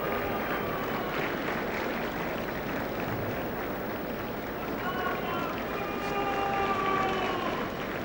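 Stadium crowd noise, a steady murmur, with a faint distant voice in drawn-out tones near the start and again from about five seconds in.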